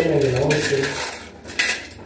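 Metal cutlery clinking against itself and a wire cutlery holder as spoons, forks and knives are handled in a dish rack, with a brief drawn-out voiced sound in the first second.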